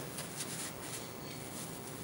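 Quiet room tone with a few faint, soft brushing or rustling sounds in the first half second: a paintbrush being wiped clean.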